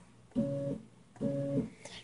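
Stepper motors on a small CNC router, driven by Leadshine DM542 drives, whining at a steady pitch during two short jog moves about a second apart, as the Z axis is raised to a safe height.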